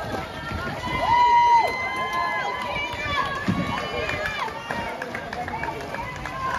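Swim-meet spectators shouting long, high-pitched cheers at swimmers racing in the pool, several voices overlapping over a background of crowd noise.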